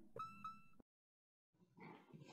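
A brief ringing tone that fades out within the first second, then silence.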